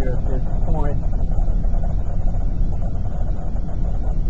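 Car driving along a highway, heard from inside the cabin: a steady low rumble of road and engine noise.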